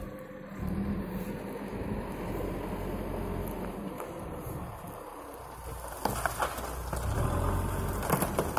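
Backhoe loader's diesel engine running steadily, joined from about six seconds in by knocks and cracks of rubbish being crushed and shoved by its bucket.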